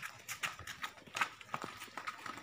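Footsteps on a hard paved yard, a quick, uneven run of light steps.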